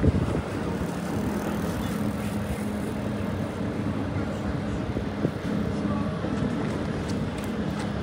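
Busy city street ambience: steady traffic noise with a low engine hum, and wind buffeting the microphone. A brief loud knock comes right at the start.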